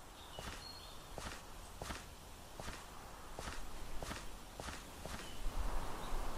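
Footsteps of leather-soled loafers on asphalt: an even, unhurried walk of about eight steps, roughly three every two seconds. A few short high chirps sound in the first second and again near the end, and a soft hiss swells in at the close.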